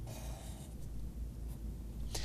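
Felt-tip marker drawing lines on paper: one stroke lasting about the first half-second, then a brief scratch about a second and a half in.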